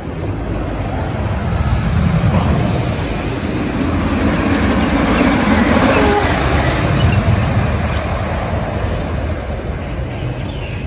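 Great Coasters International wooden roller coaster train rumbling along its wooden track, swelling over the first couple of seconds, loudest around the middle and easing off toward the end.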